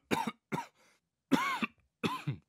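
A man laughing in a few short bursts, the longest one about two-thirds of the way through.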